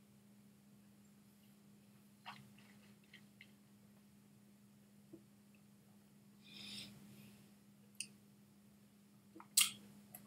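Faint mouth sounds of a man tasting a sip of whisky: a few small lip and tongue clicks and a soft breath out, with a sharper click near the end, over a low steady hum.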